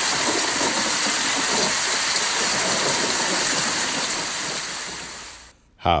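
Steady rain sound effect, an even hiss of falling rain that fades out about five seconds in and stops.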